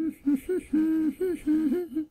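A high voice singing a short wordless tune of brief notes, mostly on one or two pitches with small scoops between them, several notes a second. It stops just at the end.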